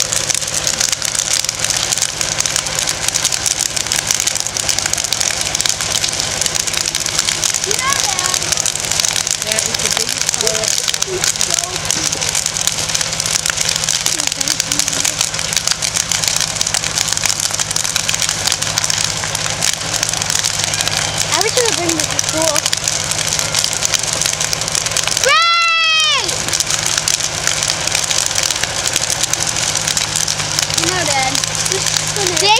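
A large fire in a burning wooden outhouse, crackling steadily over a steady low hum. About 25 seconds in, a short, high call rises and falls once and stands out above the fire.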